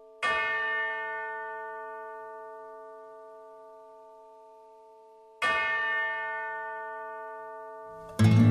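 Song intro: two bell-like chimes struck about five seconds apart, each ringing out with many overtones and slowly dying away.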